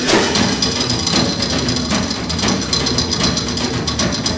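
Live band music led by a drum kit keeping a steady beat of about two strikes a second, with no singing.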